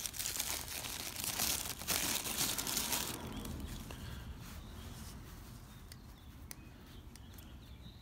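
Paper wrapping crinkling and rustling for about three seconds as a pocketknife is unrolled from it. After that it goes quieter, with a few faint light clicks as the knife is handled.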